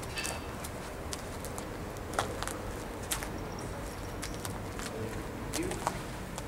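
Irregular cracks and knocks of footsteps and brushing through dry debris and twigs, scattered unevenly, the loudest about two seconds in and just before the end, over a steady low rumble.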